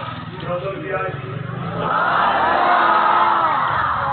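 A man's voice calling out loudly, ending in one long drawn-out phrase that rises and falls, with crowd noise behind.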